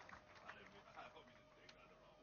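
Near silence: faint background with a few brief, faint chirp-like sounds and a faint steady hum.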